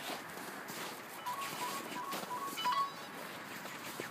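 Footsteps in snow, with a run of short, even beeps stepping between two close pitches from about a second in to near the end.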